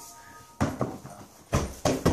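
An inflatable beach ball being rolled and kicked on a hardwood floor: a few soft thumps, one pair about half a second in and a stronger pair about a second and a half in.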